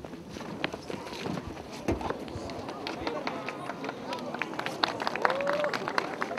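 Live sound of police officers storming a stopped car: many sharp clicks and knocks, with short distant shouted calls, one clearer shout near the end.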